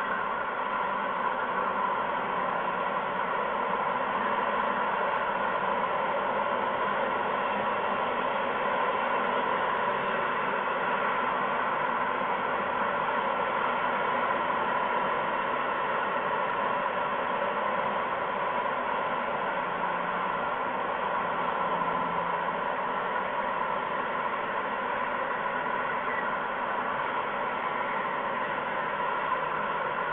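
A steady, even hiss that runs unbroken, with no separate calls, knocks or wingbeats standing out.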